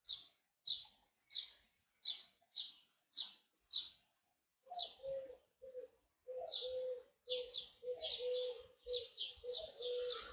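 Birds chirping: short high chirps about every half second. From about halfway through, a lower steady note joins them in short broken stretches, and the chirps come faster.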